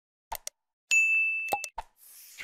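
Animated subscribe-button sound effects: a couple of quick clicks, then a bright bell ding about a second in that rings for under a second, and two more clicks near the end.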